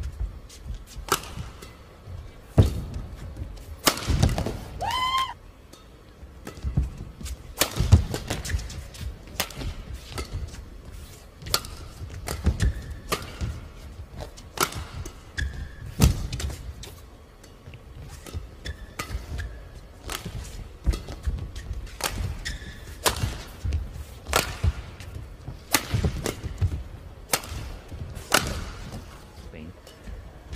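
Badminton rally: sharp racket strikes on the shuttlecock every one to two seconds, with rubber shoe soles squeaking on the court mat between shots, one rising squeal about four seconds in.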